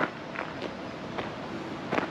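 Footsteps on a gravel trail: a few separate steps.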